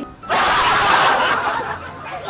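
A short burst of laughter from several people, loud at first and fading after about a second.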